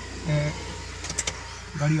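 Inside a stationary car cabin: a low steady hum with a few light clicks about a second in, between short bits of speech.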